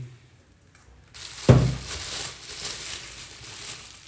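Plastic bubble wrap crinkling and rustling as a car speaker wrapped in it is handled and set on the desk, starting about a second in, with a single thump at about a second and a half.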